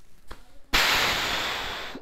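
A person's breathy exhale: a rush of air noise that starts suddenly and fades away over about a second.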